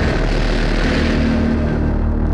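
A loud rushing whoosh, a film sound effect on a dramatic cut, starting suddenly and fading out near the end, over a steady low background-music drone.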